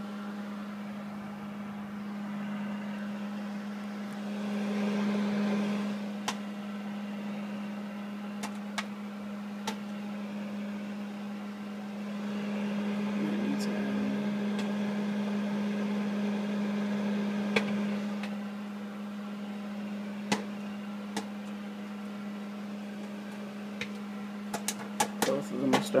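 Microwave oven running with a steady hum while popcorn pops inside microwave popcorn bags: single scattered pops at first, coming thick and fast in the last couple of seconds as the popcorn starts to pop really good.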